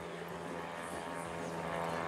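Faint, steady engine drone, slowly growing a little louder.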